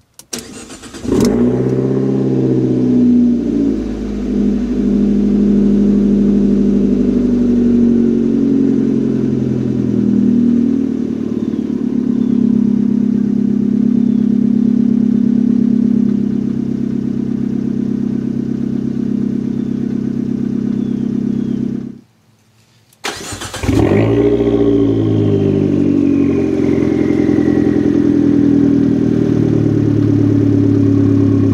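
A 2015 Fiat 500 Abarth's turbocharged 1.4-litre four-cylinder cranks and catches about a second in, flares up and settles into a steady idle, heard from the driver's seat. After a short break it is started again and heard from behind the car, again flaring up on start and settling to idle.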